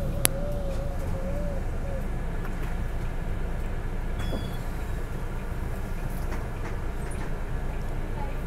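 Steady low rumble of a city bus heard from inside the cabin, with a sharp click just after the start. A faint wavering tone runs through the first two seconds, and a short high beep comes about four seconds in.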